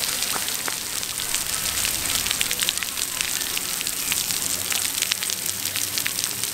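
Splash pad water jets spraying, a steady hiss with many small droplets pattering onto the wet concrete pad.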